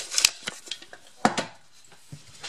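A few light knocks and clinks of tools or hardware being handled: two close together near the start and one more a little over a second in.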